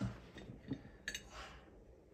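A few faint clinks and knocks from a glass cup being handled on a desk, one near the start, then two more about a second in.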